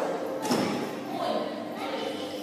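A single thud about half a second in, from a barbell loaded with bumper plates being lifted and lowered.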